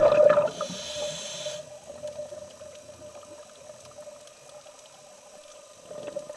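Scuba diver breathing through a regulator underwater: a loud burst of exhaled bubbles at the start, then a short high hiss of an inhale about a second in, then low steady background noise.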